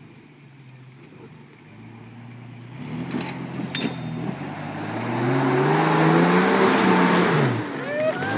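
Toyota Land Cruiser 60-series engine pulling under load up a rock climb, getting louder as it nears; the revs climb and hold, then drop away near the end. Two sharp knocks a few seconds in.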